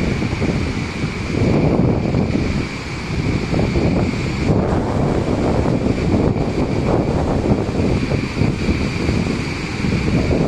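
Roar of muddy floodwater pouring over a wide waterfall in spate: a loud, steady, deep rumble with hiss on top. Wind buffets the microphone.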